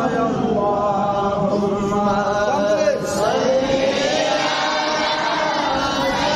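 A man chanting a devotional milad recitation in long, held melodic phrases. One phrase ends about halfway through and the next begins straight after.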